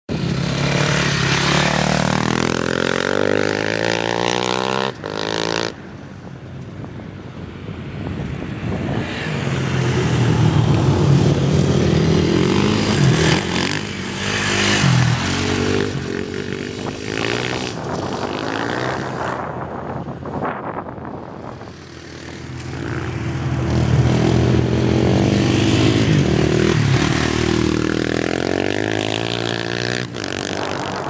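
Dirt bike engine revving hard as the bike laps a track, its pitch climbing and falling again and again as it accelerates and backs off, growing louder and fainter as it comes near and goes away. The sound drops suddenly about five seconds in.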